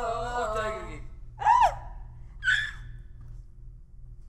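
A voice trails off about a second in, followed by two short, high vocal exclamations. The first is the loudest, its pitch rising and then falling.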